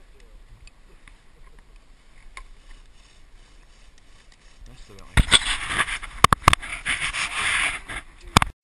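Hand saw rasping through wood close up, starting about five seconds in after a quiet stretch, in uneven strokes with sharp clicks among them.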